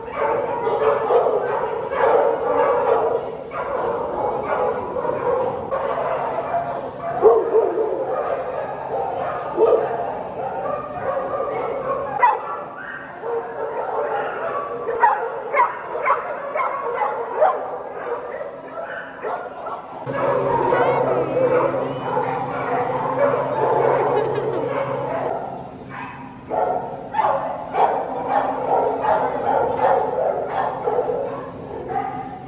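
Many shelter dogs in kennel runs barking and yipping over one another without a break. A low steady hum joins about two-thirds of the way in.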